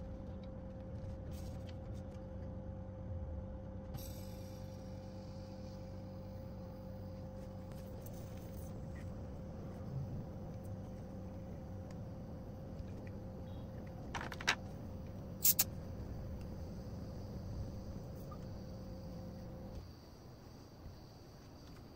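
A few sharp clicks from a metal butane gas canister being handled and fitted to a brass connector, the loudest coming in a cluster about three quarters of the way through, over a steady low hum.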